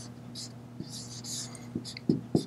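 Dry-erase marker writing on a whiteboard: a few short, high-pitched scratchy strokes, over a steady low electrical hum.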